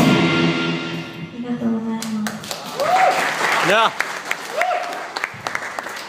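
A rock band's last chord on electric guitar and drums ringing out and fading over about two seconds, followed by scattered handclaps and a few short shouts from the people in the room.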